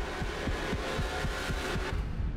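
Tense trailer soundtrack: a fast, even low pulse of about five thuds a second under a dense high wash, cutting off near the end.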